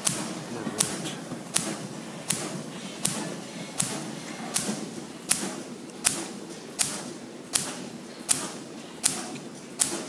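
Pulsair compressed-air mixing system firing into a vat of fermenting grape must. Each sharp burst of air comes about every three-quarters of a second in an even rhythm, with a low churning from the liquid between bursts. The air pulses mix the must and put oxygen into the fermented juice.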